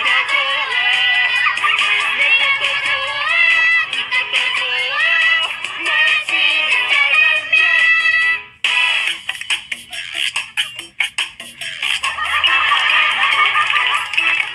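A man singing a bouncy children's song over a pop backing track. About eight and a half seconds in the voice stops and the backing thins to a bare beat, then the full music comes back near the end.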